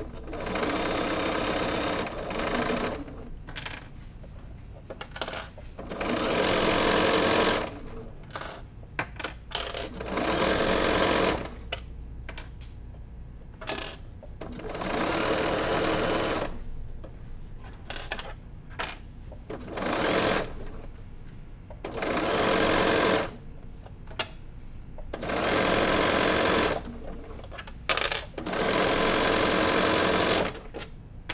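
Bernina sewing machine stitching a binding strip through quilted, batting-backed panels. It runs in seven bursts of about two to three seconds each, with short pauses between them and small clicks in the pauses.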